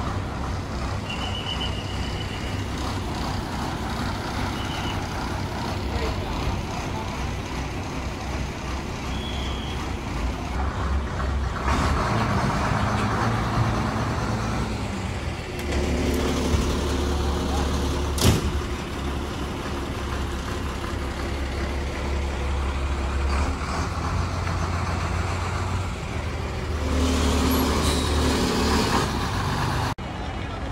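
Diesel state-transport bus engines running steadily, a bus idling close by from about halfway with a deep even hum. There are hissing spells and one sharp short burst a little past halfway, typical of bus air brakes.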